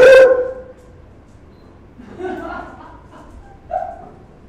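A dog barks once, loudly, right at the start, the bark dying away within about half a second.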